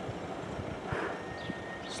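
Outdoor ambience on a cold morning: a steady hiss of light wind and distant traffic, with faint low knocks of wind on the microphone.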